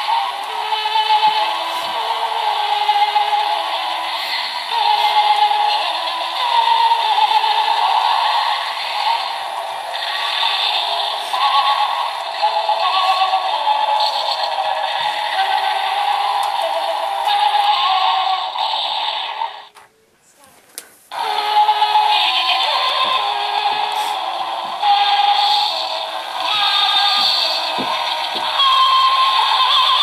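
A Gemmy animated Halloween ghost decoration playing its built-in electronic tune with synthetic singing, a melody of held stepping notes. The music breaks off for about a second some twenty seconds in, then starts again.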